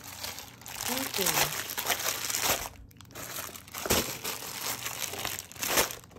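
Plastic packaging crinkling and rustling in irregular bursts as store-bought items are handled and unwrapped.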